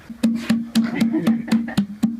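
Hollow-log slit drum struck in a quick, even beat of about four strokes a second, each a pitched wooden tock with a short ring. The beat begins a moment in.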